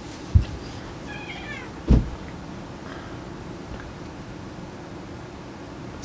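A domestic cat gives one short meow that falls in pitch, about a second in. There are two dull thumps, one just before the meow and a louder one just after it.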